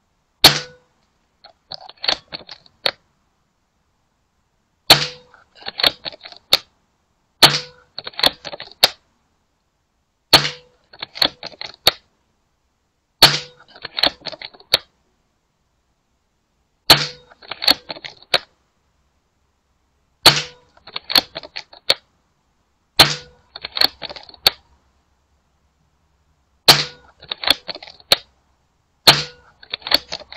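Air rifle shots, about ten of them a few seconds apart, each a sharp crack followed about a second later by a quick run of mechanical clicks from the rifle being cycled and reloaded.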